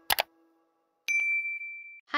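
Two quick clicks, then about a second in a bright ding that rings on at one steady pitch. These are the click and notification-bell sound effects of a subscribe-button animation.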